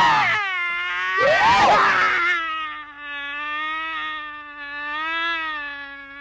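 A man's voice giving two loud, pitch-swooping cries, then holding one long drawn-out note with a slight waver for about four seconds, like a fading wail.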